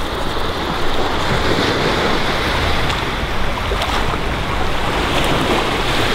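Small waves washing onto a sandy beach in a steady rush, with wind buffeting the microphone in a low rumble.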